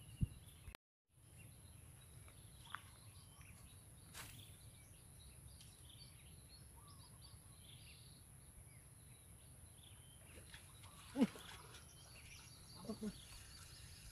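Faint outdoor ambience: scattered bird chirps over a steady high thin whine and a low rumble, with a single click about four seconds in and brief faint voices near the end.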